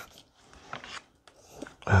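Faint handling noise of a battery tester's clip leads being fitted onto the ends of a cylindrical lithium-ion cell: a few light clicks and rustles.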